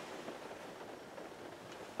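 Faint, steady room tone: a low even hiss with no distinct sounds.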